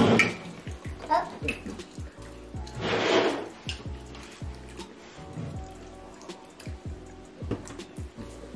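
Background music playing steadily, with a laugh at the very start and a short noisy burst about three seconds in. Occasional light clicks of plastic forks and spoons on plastic food trays.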